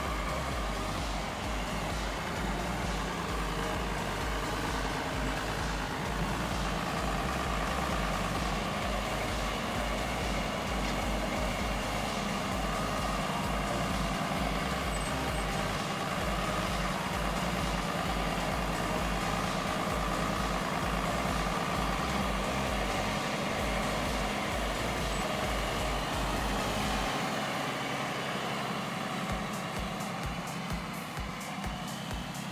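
Farm tractor's diesel engine running steadily while its front loader handles straw bales.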